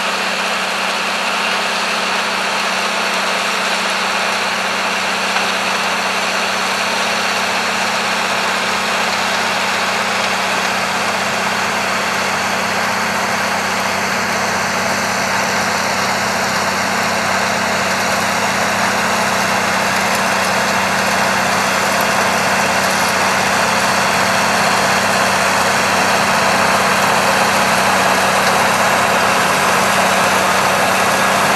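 Ford 40-series tractor engine running steadily under load as it pulls a de-stoner through the soil, growing a little louder towards the end.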